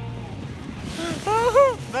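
Wind rushing over the microphone and a low, steady engine drone from a Lada Niva towing a sled through snow. About a second in, a man's voice calls out over it.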